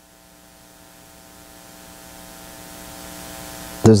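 Steady electrical mains hum with hiss in the sound system, growing gradually louder, until a man's voice comes in near the end.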